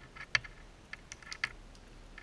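Small sharp clicks and ticks of a steel cable seal being worked by hand, the braided cable and metal pieces knocking and catching against each other. The clicks come irregularly, a handful in two seconds, the sharpest about a third of a second in.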